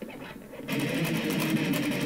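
Electric guitar riff kicking in about two-thirds of a second in: a fast run of low notes.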